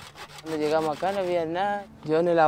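Handsaw strokes rasping through a wooden board, under a man speaking.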